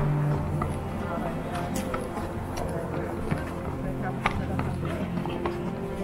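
Background music with held low notes, and the scattered sharp clicks of a horse's shod hooves on a paved path as the mare is led at a walk.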